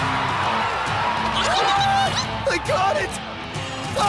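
Cartoon soundtrack of action music under a cheering crowd, with short wordless shouts and exclamations.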